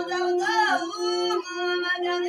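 Ethiopian azmari singing with masinko, the one-string bowed fiddle: a voice sings a sliding, ornamented line over a steady held note.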